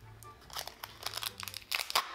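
Duct tape and paper lining being peeled and torn from the side of a cardboard box mould, giving a run of small crinkling crackles that grows busier and is loudest near the end.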